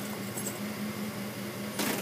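GMC Yukon engine idling steadily after a remote start, with an even low pulsing hum. A brief hiss comes near the end.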